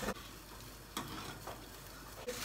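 A utensil stirring melting candle wax in a small metal pot, giving a few faint clinks over a low steady hiss.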